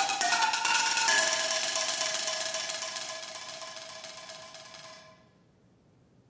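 Pitched percussion bars struck with mallets in a quick run, ending on a final stroke about a second in that rings out and fades away over about four seconds, leaving near silence.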